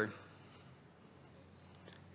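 The tail of a man's speech, then near silence: faint room tone in a hall.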